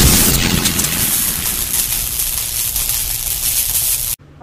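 Logo-sting sound effect: a loud hit opens a dense, gritty rush of noise with a low rumble under it, which slowly fades and then cuts off suddenly.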